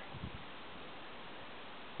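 Faint, steady hiss of a shallow brook running over a pebble bed, with a couple of faint low knocks near the start.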